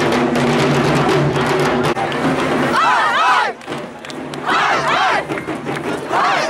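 Dhak drums beaten in a fast, dense roll over crowd noise; about three seconds in the drumming breaks off and the crowd cheers, with several long rising-and-falling shouts.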